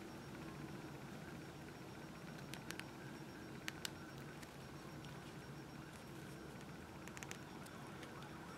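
A few faint small clicks of a plastic knife accessory being pushed into an action figure's plastic leg holster, over quiet room tone.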